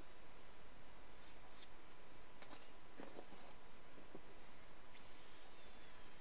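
A few faint clicks and light knocks from hand tools being handled on loft boards, over a steady hiss, with a short faint falling whistle near the end. The circular saw is not running.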